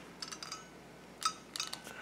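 Faint paper rustling and a few small plastic clicks as a handheld craft tab punch is fitted over the edge of a paper envelope, with one slightly louder click a little past the middle.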